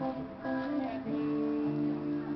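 Guitar music, with held notes and chords changing every half second or so.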